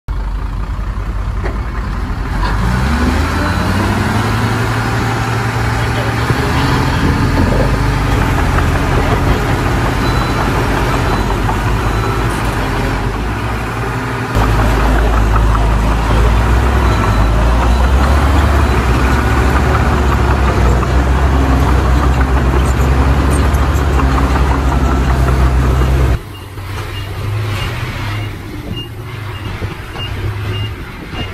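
Dump truck diesel engine running loud while the tipper bed is raised and its load of soil is dumped. The engine rises in pitch early on, gets louder and heavier about halfway through, then drops off suddenly a few seconds before the end. After that a regular high beeping sounds over a quieter engine.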